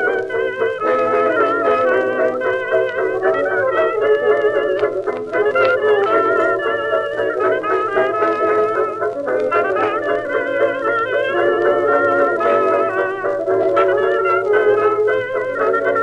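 A 1920s dance orchestra playing a fox-trot from a 1925 shellac disc. It has a thin sound with little bass, and the melody is carried with a wide wavering vibrato over steady band chords.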